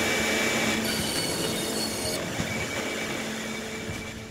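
Bandsaw running as a wooden pallet runner is fed through its blade: a steady machine noise with a thin high whine that stops about halfway through, growing gradually quieter toward the end.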